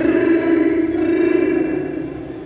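A man laughing, one drawn-out voiced laugh held on a steady pitch that fades toward the end.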